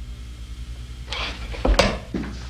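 Hard household objects rummaged and knocked about in a search for a key: a rustle about a second in, then a click and a sharp clatter near the end, over a low steady hum.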